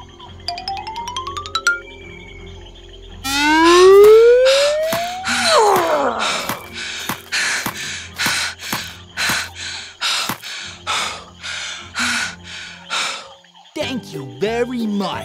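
Cartoon sound effects over background music: a short rising run of ticks, then a whistle-like tone that glides up and falls back down, followed by a regular series of short noisy bursts about two a second.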